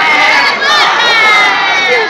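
Street-theatre actors crying out in high, shrill voices: a short cry, then a longer wavering cry that slides down in pitch near the end.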